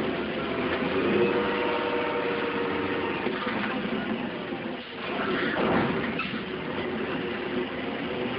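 Crawler crane's engine running steadily as its grapple swings a car aloft, dipping briefly about five seconds in and then coming back louder.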